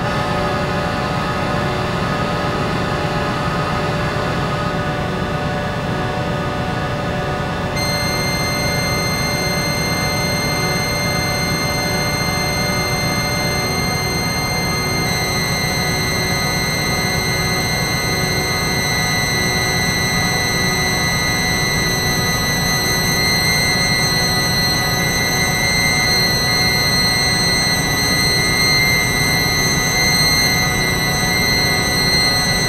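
Dense experimental electronic drone: many sustained tones layered over a steady low rumble, with high whining tones joining about eight seconds in and again about fifteen seconds in.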